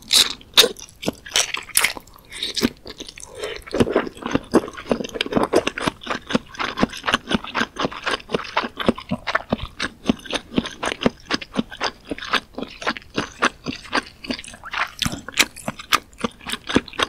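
Close-miked chewing of soft Korean fish cake (eomuk) soaked in spicy broth: a quick, continuous run of wet mouth clicks and smacks, several a second.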